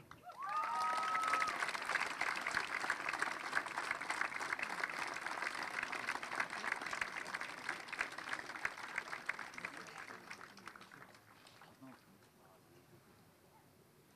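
Audience applauding. The clapping starts at once, holds steady, then thins out and dies away about eleven seconds in.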